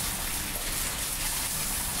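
Water spraying steadily from a salon shampoo-bowl sprayer onto hair during a hair wash, a steady hiss.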